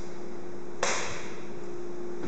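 A single sudden sharp swish or click just under a second in, fading quickly, over a steady hiss with a faint steady hum.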